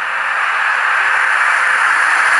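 A loud, steady hiss of noise with no clear pitch, growing slightly louder.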